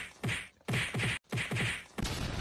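A series of sharp whacking hits, three in about two seconds, each ending in a low falling thud.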